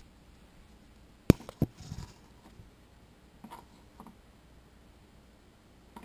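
Small objects being handled and set down: one sharp click about a second in, a second click just after, then a few faint knocks.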